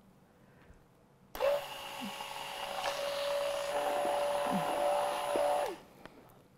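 Handheld stick blender mixing lotion in a glass jug: after about a second of near silence the motor starts and runs with a steady whine, growing a little louder, then spins down with a falling pitch just before the end.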